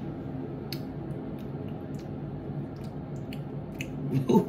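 Small plastic seasoning sachet being handled and torn open, giving a few scattered sharp crackles over a steady low hum.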